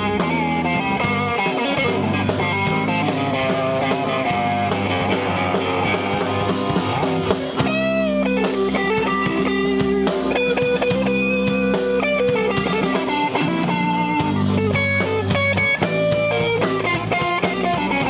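Live slow-blues band playing an instrumental break: a lead electric guitar solo with bent, gliding notes over a backing guitar and a steady low bass line.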